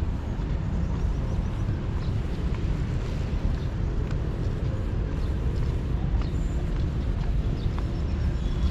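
Footsteps on a concrete walkway over a steady low outdoor rumble, with a few faint ticks higher up.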